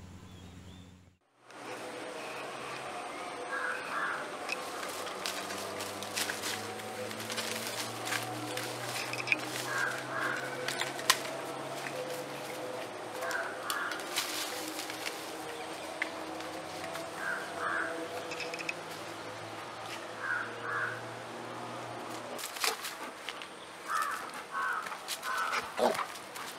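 Dry palm fronds and leaves crackling and rustling as a dog plays in them. Through it a bird repeats a short double call every few seconds.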